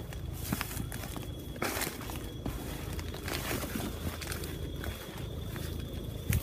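Footsteps through freshly cut weeds and leaf mulch: irregular rustling and crackling steps.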